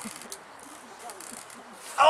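Faint creaking and crackling of a wicker basket as a man sits stuck in it, with a small click early on.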